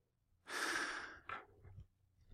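A man's single breath into a close microphone about half a second in, followed by a few faint short clicks.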